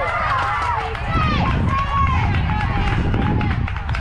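High-pitched young voices shouting and cheering, with no clear words, over a steady low rumble.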